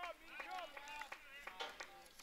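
Faint distant voices calling out across a ballfield, with a few light clicks.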